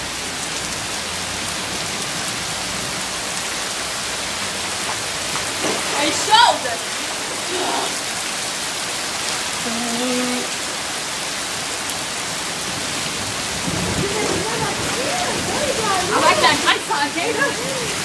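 Heavy downpour: a steady hiss of rain falling, with a few brief voices breaking in about six seconds in and near the end.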